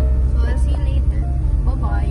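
Steady low rumble of a car's interior while it is driven, under background music and a few brief voice sounds.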